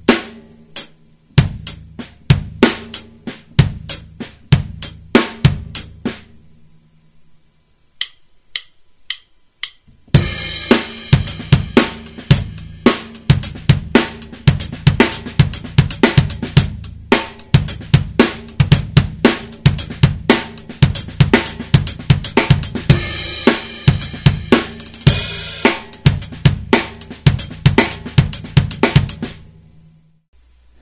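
Drum kit playing a linear funk groove with snare ghost notes, bass drum and hi-hat, first at a slow tempo. After a short pause and a few light clicks, it is played again faster, with a cymbal crash near the end, and the playing stops just before the end.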